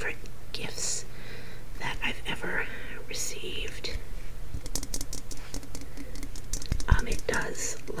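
Quick, light taps on a glass snow globe, a rapid run of small clicks starting about halfway through, with a couple of duller knocks shortly before the end.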